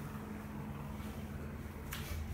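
Desktop PC humming steadily while it starts up: a low fan and power-supply hum with a few held low tones, and a short click near the end.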